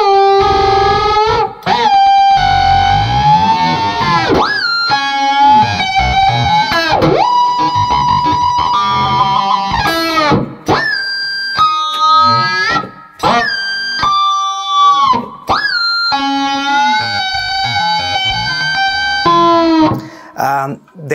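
Electric guitar playing harmonics that are bent up and down with the whammy bar, deliberately nasty, dissonant sounds. Notes swoop and dive in pitch, with high squeals and a few brief breaks between phrases.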